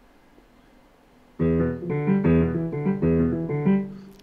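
A keyboard plays a bass-line phrase of short, separate, steady notes starting about a second and a half in. The phrase belongs to a composition built on a 21-beat cycle of three fives and a six.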